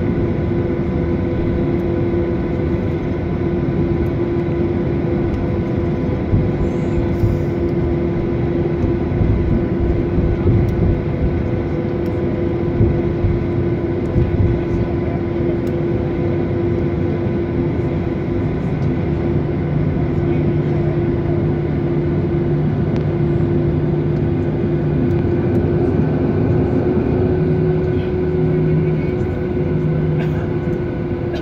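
Jet airliner cabin noise while taxiing: a steady engine hum and rumble with a constant whine on top. A deeper hum joins about two-thirds of the way in.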